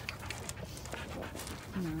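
Quick, irregular crunching clicks of a miniature Jersey bull eating grain from a plastic tub, picked up close.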